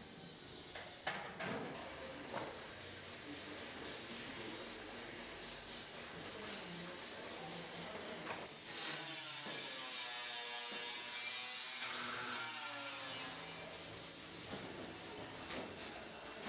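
Quiet workshop sounds of body panels being bolted onto a steel MGB bodyshell: scattered light clicks and knocks of tools and metal. A steady hiss runs for a few seconds about halfway through.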